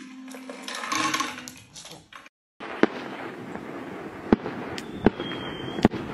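Firecrackers going off in a series of about five sharp bangs at irregular intervals over a steady noisy background. A brief high whistle comes just before the last bang.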